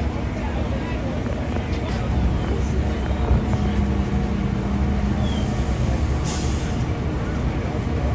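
Steady low rumble of idling fire-apparatus diesel engines on the fireground, with a short hiss about six seconds in.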